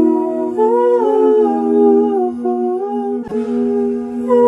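Hip-hop instrumental beat intro: layered, humming, voice-like chords move over one steady held note, with no drums. About three seconds in, a short hiss of noise cuts across before the chords carry on.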